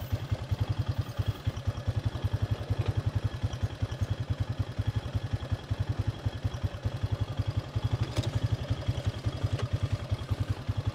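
Honda Foreman Rubicon 500 four-wheeler's single-cylinder four-stroke engine idling with a steady, rapid low putter. A single light knock sounds about eight seconds in.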